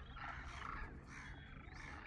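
A large flock of demoiselle cranes calling continuously: many faint, overlapping chirping calls at once as the birds communicate with one another.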